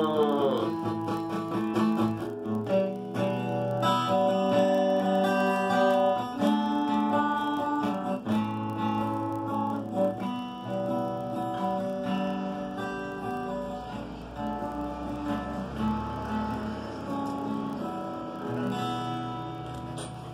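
Acoustic guitar playing the closing chords of the song, gradually getting quieter toward the end.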